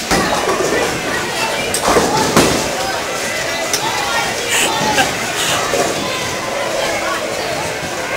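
Bowling alley din of people talking, broken by sharp clatters and knocks of bowling balls and pins, the loudest about two seconds in.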